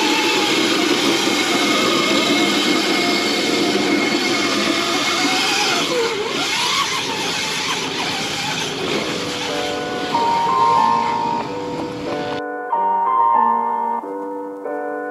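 Electric Crazy Cart drift kart running and sliding on asphalt: a steady, rough scrubbing rush from its caster wheels with a faint whine that rises and falls. Piano music comes in about ten seconds in, and the cart noise cuts off suddenly near the end, leaving only the music.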